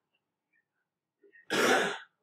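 A person clearing their throat once, short and loud, about a second and a half in. Before it there are only faint scratches of a marker writing on paper.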